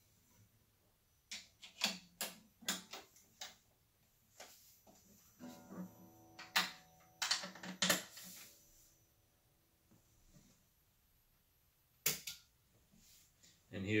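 Acoustic guitar being handled while being picked up and strapped on: scattered clicks and knocks of the body, strap and hardware, with the open strings ringing faintly for a couple of seconds midway.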